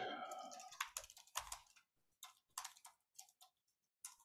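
Faint typing on a computer keyboard: a quick, irregular run of key clicks that trails off about half a second before the end.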